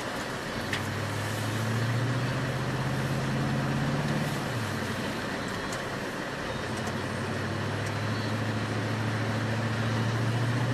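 Vehicle engine and road noise heard from inside the cab while driving. The engine note climbs, drops about four and a half seconds in, then climbs again.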